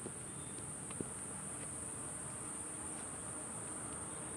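Steady, high-pitched chorus of insects droning without a break, with a faint click about a second in.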